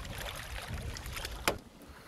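Water splashing and sloshing as a landing net scoops a salmon out of the river beside an aluminium boat, with a single sharp knock about one and a half seconds in.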